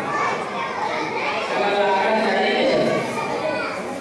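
A man speaking into a hand-held microphone through a loudspeaker, with children's voices in the background.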